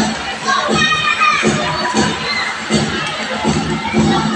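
A crowd of children shouting and cheering, with a cluster of high shouts about a second in.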